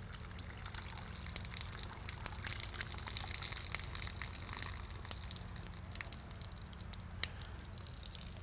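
Water poured from a camp mug through a bandana used as a strainer, trickling and dripping through the cloth, heaviest around the middle.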